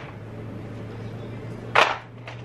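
A short, loud, noisy clatter near the end as makeup items are handled on the table, over a faint steady low hum.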